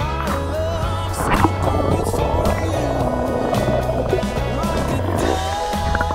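Background music with a heavy, steady bass line and a melody over it.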